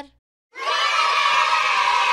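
A group of children cheering and clapping, starting about half a second in after a brief silence.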